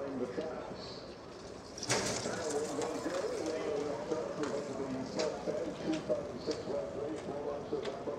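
Greyhound starting traps springing open with a sudden loud clatter about two seconds in, under a man's steady race commentary.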